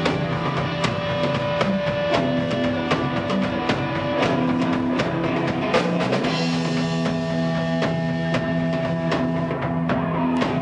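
Live rock band playing an instrumental passage: two electric guitars and a bass guitar through Marshall amplifiers, with a drum kit keeping a steady beat.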